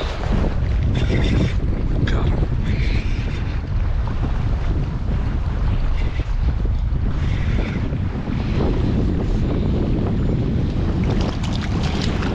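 Wind buffeting the camera microphone in a steady low rumble, with choppy water slapping against a kayak.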